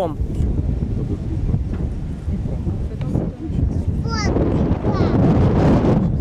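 Wind buffeting the microphone with a steady low rumble. A short high call rises and falls about four seconds in, and distant crowd voices grow louder near the end.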